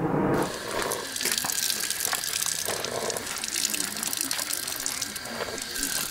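A steady rushing, splashing noise of running water with many small clicks in it, cutting off suddenly at the end.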